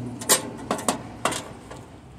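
A handful of sharp clicks and taps, the loudest about a third of a second in: the high-voltage diode and its terminals being handled against the sheet-metal chassis of an opened microwave oven.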